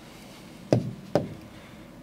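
Two dull knocks on a hard surface, about half a second apart, the kind made when a hard object is handled or set down on a desk.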